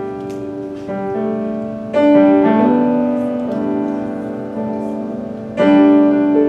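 Piano playing slow, sustained chords, with a new chord struck about a second in, another at about two seconds and one near the end: the piano introduction to a song.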